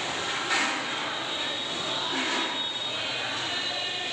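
Steady rushing background noise, with a brief louder swell about half a second in and another about two seconds in.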